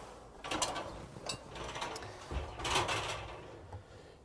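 Faint rustling and light knocks of handling and moving about, a few scattered noises with no steady sound between them.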